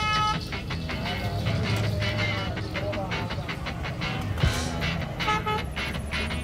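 Busy street sound: a vehicle horn honks briefly at the start and again near the end, over voices and traffic.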